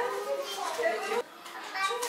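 A young child's voice, vocalizing in short high-pitched bursts, with a brief pause a little past the middle.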